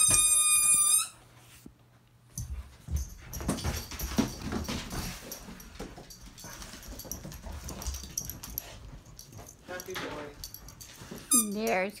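A dog whines once at the start, a high, steady whine lasting about a second, followed by quieter scattered knocks and shuffling as the dogs move about.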